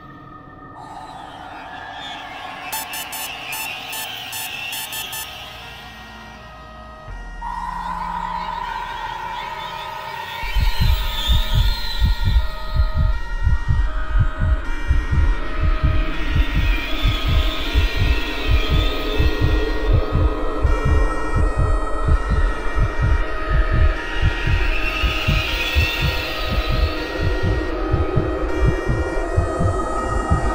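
Tense film score: held tones build for about ten seconds, then a loud, fast, low heartbeat-like pulse starts and keeps going under them.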